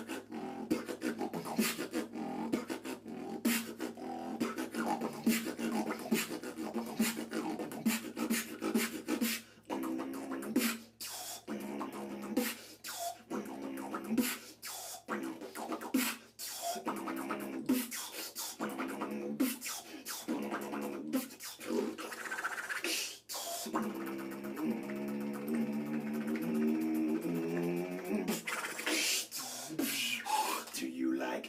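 Solo beatboxing: a fast, dense run of sharp mouth clicks and percussive hits, with held hummed notes sounding under the beats from about ten seconds in. Near the end a rising vocal sweep leads into a longer held hummed passage.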